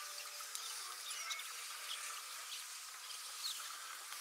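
Faint outdoor ambience of chirping birds and insects: a steady high hiss with many short chirps and calls scattered through it.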